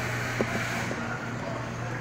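Steady low hum under an even background noise, with one short click about half a second in.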